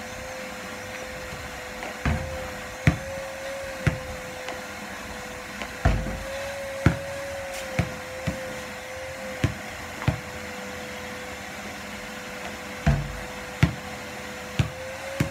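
A vacuum cleaner running steadily with a constant whine, over a basketball bouncing on the pavement and hitting the hoop: about a dozen thumps and bangs at uneven intervals, three of them heavier.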